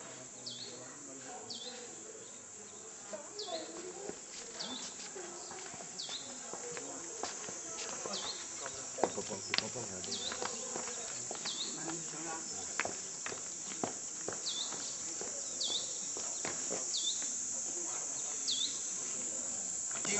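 Insects buzzing steadily at a high pitch, with a short chirp repeating about once a second and a few sharp clicks.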